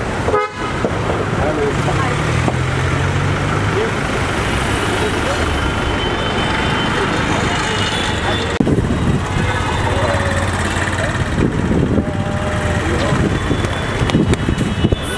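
Busy city street traffic with car horns honking, mixed with people's voices.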